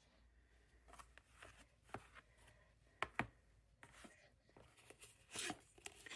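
Faint, scattered clicks and light rustles of cardboard packaging being handled, with a sharper tap about three seconds in.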